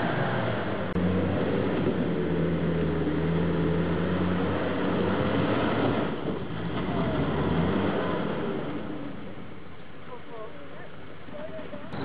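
Land Rover Defender's engine working steadily under load as it climbs a steep, rutted dirt track. The engine sound fades in the second half as the vehicle pulls away up the hill.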